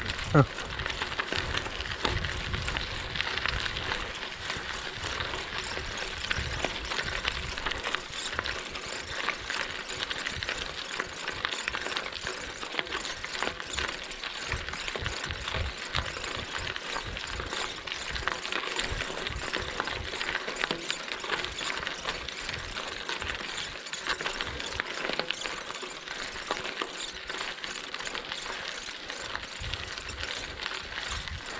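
Bicycle rolling on a gravel road: a continuous rapid ticking, like a hub ratchet, over the steady crunch and rattle of tyres on gravel.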